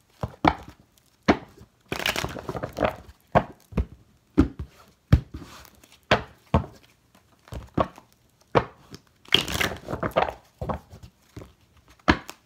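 A deck of tarot cards being shuffled by hand: irregular slaps and clicks of the cards, with two longer rustling runs, one about two seconds in and one near the end.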